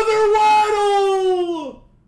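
A man's voice holding one long, drawn-out high note in a sung holler. The note glides down in pitch and fades out about three-quarters of the way through.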